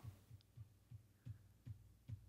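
Near silence in a break between voices, with faint short low thumps repeating about three times a second.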